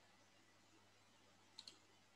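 Near silence, broken near the end by two quick, faint clicks at a computer.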